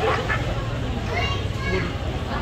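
Children's voices calling and chattering in a crowd, over a steady low hum.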